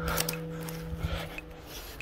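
Rustling and rubbing of a handheld phone against clothing and a backpack strap while walking, over a faint held chord of background music that stops near the end.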